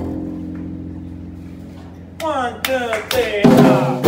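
Jazz trio with grand piano and double bass: a low held chord fades for about two seconds, then fast descending piano runs cascade down, building into a loud full-band passage near the end.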